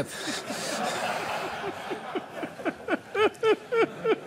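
A studio audience and panel laughing. In the second half one man's laugh stands out as a rapid run of short 'ha' bursts.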